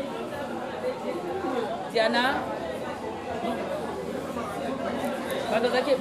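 Several people's voices talking and chattering in a room, with one loud, high-pitched voice rising and falling briefly about two seconds in.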